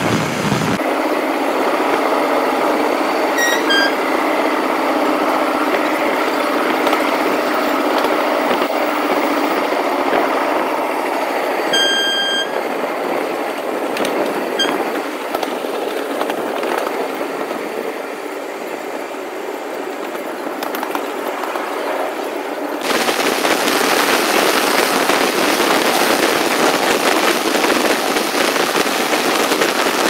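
Passenger train running on the track, heard from an open window: a steady rumble and rattle of wheels on rails mixed with rushing air. Its character shifts abruptly twice and it is louder and brighter in the last part. A brief high-pitched tone sounds twice, about 3.5 seconds in and again about 12 seconds in.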